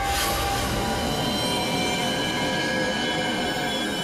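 Tense dramatic background score: many held, screeching high tones over a continuous low rumble, with no break.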